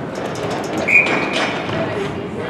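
Ice hockey play on an arena rink: a run of sharp clicks and knocks from sticks and puck, with skates scraping on the ice. A short high-pitched note sounds about a second in.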